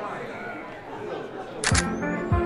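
Crowd chatter, then a camera shutter clicking twice in quick succession near the end, with a thump as music comes in.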